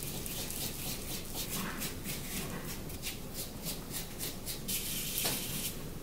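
Foam brush rubbing paint over a latex mask, a steady run of short strokes several a second.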